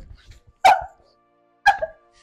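A woman sobbing: two short, sharp sobs about a second apart, over soft background music that comes in with the first sob.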